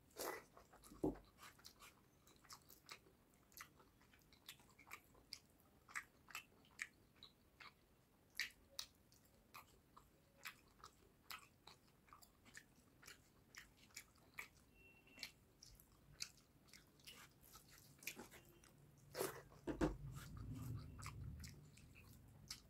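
Close-miked chewing of a mouthful of rice and fish curry: a faint, steady patter of small wet mouth clicks and smacks, with a louder cluster near the end.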